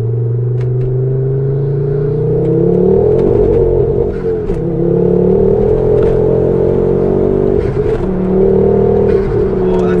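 Mk2 Ford Focus RS turbocharged five-cylinder engine heard from inside the cabin, accelerating hard through the gears. Its pitch climbs, drops briefly at gear changes about four and eight seconds in, then climbs again.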